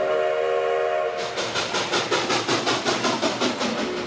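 Steam locomotive sound effect: a chord whistle held for about a second, then fast, even chuffing at about five beats a second, with the whistle coming back faintly near the end.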